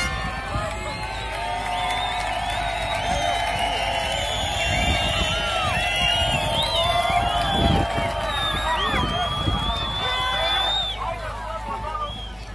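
A crowd of football supporters chanting and shouting together, many voices at once, with a few low thumps.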